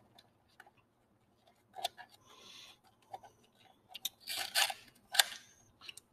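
Handling noise as a handheld radiation survey meter is fitted into its wrist-strap holder: a few small plastic clicks and short rubbing sounds, one click about two seconds in and a cluster near the end.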